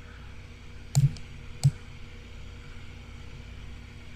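Three computer mouse clicks between about one and two seconds in, as on-screen shapes are selected and dragged. A steady low hum runs underneath.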